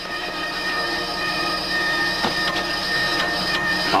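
A steady electronic drone of several held tones over a low hum, with a couple of faint clicks in the second half.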